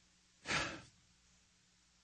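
A man's single short breath into a close studio microphone, about half a second in and lasting under half a second.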